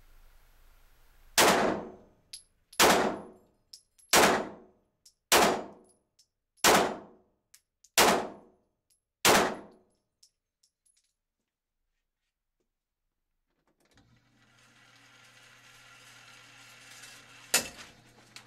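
Seven pistol shots from a Glock fitted with a Lone Wolf 3.5 lb trigger connector, fired at a slow, even pace about 1.3 seconds apart, each ringing off the concrete walls of an indoor range. After a short gap, a steady electric motor hum starts up, the target carrier running the target back, ending in a sharp clunk just before the end.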